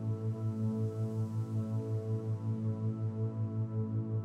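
Theta isochronic tone for brainwave entrainment: a low tone pulsing on and off evenly about five and a half times a second. Under it runs a soft ambient synth drone of sustained notes.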